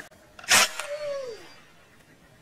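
A single sharp shot from an air gun about half a second in, followed by a faint tone that slides down in pitch as it fades.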